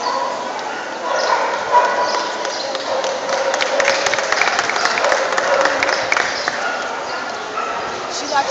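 Dogs whining and yipping over steady crowd chatter.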